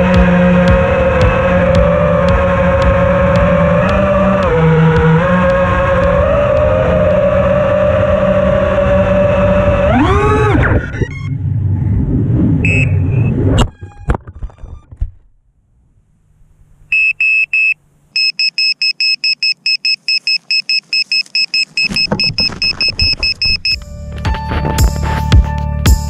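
FPV racing quadcopter's electric motors and propellers whining, pitch moving with the throttle and rising sharply near ten seconds, then cutting out in a crash. After a few seconds of near silence, the downed drone's buzzer beeps rapidly and repeatedly, its lost-model alarm.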